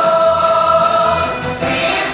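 Music played for a stage dance, with a chorus of voices holding one long note for about a second and a half before the music moves on.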